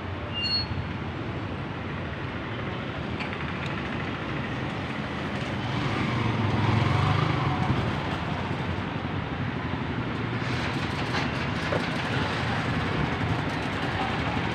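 Steady road traffic. A heavier vehicle's engine rumble swells and passes about six to eight seconds in.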